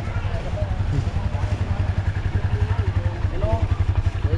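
Motorcycle engine idling close by, a steady rapid low pulsing that keeps an even beat, with faint voices in the background.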